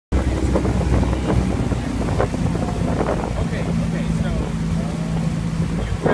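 Outboard motor of a rowing coach's launch running at a steady pitch, with wind buffeting the microphone.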